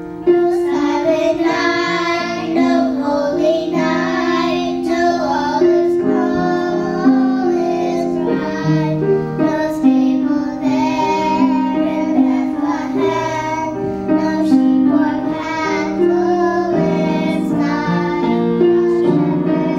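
Children's voices singing a Christmas song with piano accompaniment; the voices come in just after the start over the piano's held chords.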